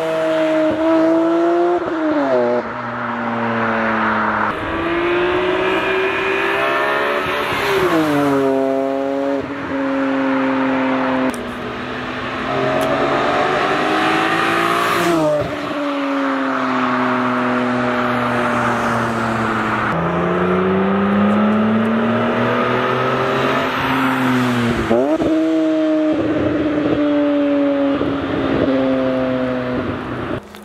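BMW E46 M3's S54 straight-six with a Top Speed muffler and added resonator, driven past in several flybys. The exhaust note climbs with the revs and drops back, either at a gear change or as the car passes. It has a deep tone with little rasp.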